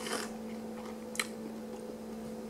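Close-miked closed-mouth chewing of a mouthful of chicken wrap, with a soft wet mouth sound at the start and a single sharp click a little over a second in. A steady faint hum runs underneath.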